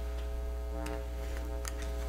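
Steady electrical mains hum with a buzzy ladder of overtones in the meeting's microphone audio, with two faint ticks in the middle.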